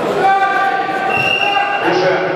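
A person's long drawn-out shout, held at a steady pitch for most of two seconds, in a large sports hall.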